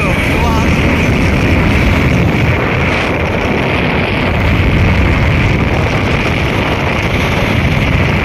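Steady rush of wind on the microphone with engine and road noise from a motorcycle riding at speed on a highway.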